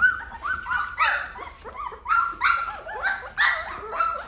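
Young Great Bernese puppies, about three weeks old, whimpering and crying in a rapid run of short, high, wavering squeals, two or three a second: hungry puppies waiting for their mother to nurse them.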